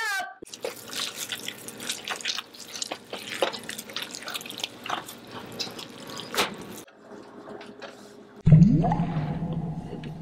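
Hands squishing and kneading wet, gloppy dough mixed with blended cauliflower in a metal bowl: irregular wet squelches and slaps. Near the end a loud, low sound starts suddenly, glides briefly up in pitch, then fades.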